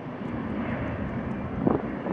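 Fokker 50 turboprop climbing away after takeoff, the steady drone of its engines and six-bladed propellers. A brief thump near the end stands out above it.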